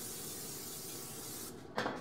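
Aerosol can of cooking spray hissing in one steady spray, cutting off about a second and a half in.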